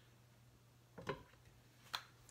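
Glass saucepan lid set down on the pot: a soft knock about a second in, then a short sharp click just before the end, over a faint low steady hum.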